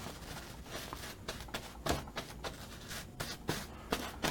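A paintbrush stroking clear coat onto a painted canvas: a string of soft, irregular brushing strokes.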